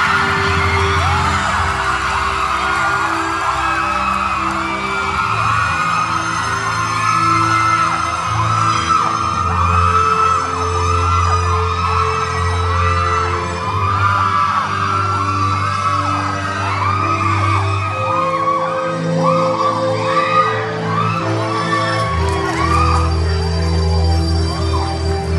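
Music with long held notes playing under a crowd of fans cheering and screaming in many short high cries, with clapping.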